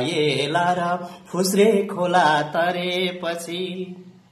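A man singing a Nepali ghazal without accompaniment, drawing out long notes that waver in pitch. The phrase trails off at the end.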